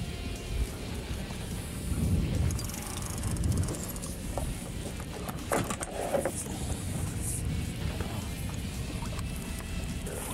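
Background music, with a steady low rumble of wind and water on an open boat beneath it, and a few brief knocks about five to six seconds in.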